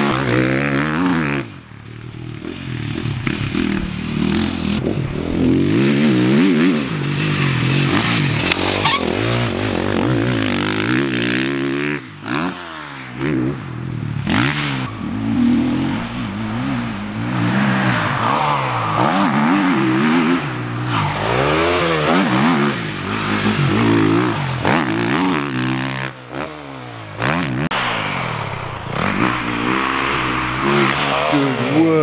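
Motocross dirt bike engine revving hard and easing off over and over as it is ridden around the track, its pitch rising and falling, with a few brief drops where the throttle shuts.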